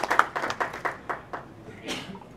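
Audience applause from a seated crowd in a hall, thinning to scattered claps and dying away within the first second and a half. A single short noise follows just before the end.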